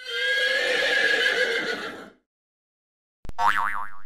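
Horse whinny sound effect lasting about two seconds. Near the end, a short warbling electronic effect.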